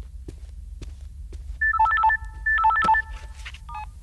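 Mobile phone ringtone: a short electronic melody of a few beeping notes, starting about one and a half seconds in and played twice, with a brief snatch again near the end, until the call is answered.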